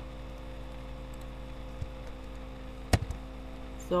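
Steady electrical mains hum under a faint hiss, broken by one sharp click about three seconds in.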